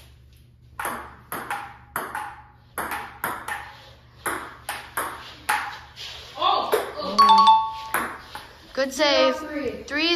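A table tennis ball clicking back and forth in a rally, off the paddles and the table about twice a second, for about five seconds.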